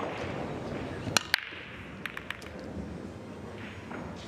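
Pool break shot: two sharp cracks about a fifth of a second apart as the cue tip strikes the cue ball and the cue ball smashes into the racked balls. A few lighter clicks follow as the scattering balls knock together.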